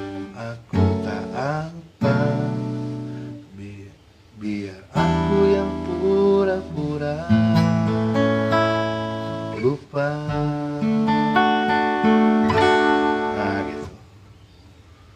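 Acoustic guitar strumming the closing chords of a song's outro, each chord struck and left to ring, with a short lull about four seconds in. The sound stops abruptly at the very end.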